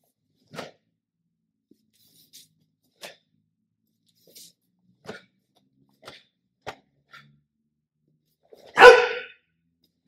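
Long staff being swung through a martial arts form: a string of short, sharp swishes and taps about one a second, then, about a second before the end, a loud half-second kihap shout.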